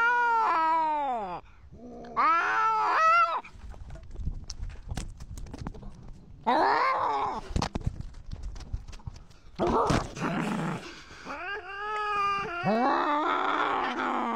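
Cats caterwauling in a territorial standoff: about five long, wavering yowls that bend up and down in pitch, the one about ten seconds in rougher and noisier than the rest. Between the yowls come scuffing, clicking and low rumbling close to the microphone.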